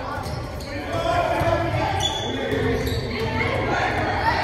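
A basketball bouncing on a hardwood gym floor in a large echoing gym, with voices talking in the background.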